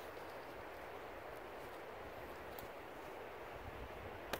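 Faint, steady outdoor background noise: an even hiss over a low rumble, with only a couple of soft ticks and no distinct handling sound standing out.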